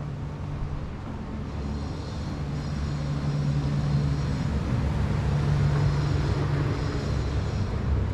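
Steady low hum of a motor vehicle's engine with street rumble, growing louder over the first half and then holding steady.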